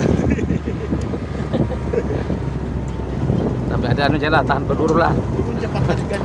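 Vehicle running along a gravel road, a steady low rumble with wind buffeting the microphone. Voices call out about four seconds in.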